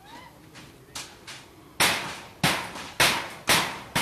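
A series of sharp knocks, about two a second, starting a little before the midpoint: five strikes, each dying away quickly.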